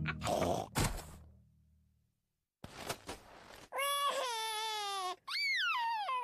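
A cartoon child character crying: a long wail about four seconds in, then a second wail that rises and then falls near the end. Before it there is a short gap of silence.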